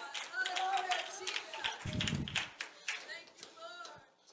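Congregation clapping by hand in quick, uneven claps while voices call out, with a brief low thump about two seconds in; it all fades toward the end.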